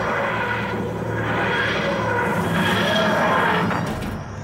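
TARDIS materialisation sound effect: a wheezing, groaning noise that rises and falls in cycles about a second apart, laid over orchestral score. It cuts off suddenly near the end.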